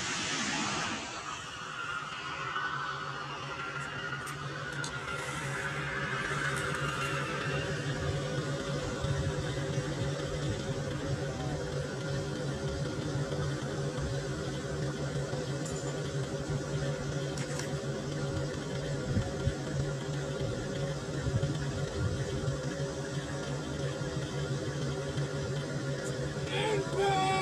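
Steady low engine hum with several held tones, running evenly, under a fading tail of a louder sound in the first second or two.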